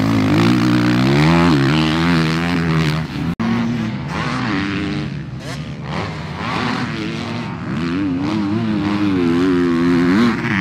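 Motocross dirt bike engines riding the track, the engine note rising and falling with the throttle. About a third of the way in the sound cuts off abruptly for an instant, then bikes are heard farther off, and the engine note grows stronger again near the end.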